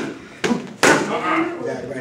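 Boxing gloves striking focus mitts: two sharp smacks in quick succession within the first second.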